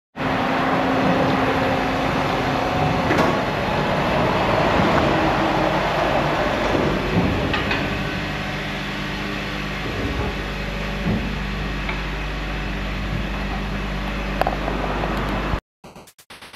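A vehicle running: a steady hum with noise over it and a few light clicks, cutting off suddenly near the end.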